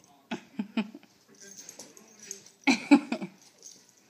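A large dog making short vocal sounds while it plays with a cat: a few brief ones in the first second and a louder burst about three seconds in.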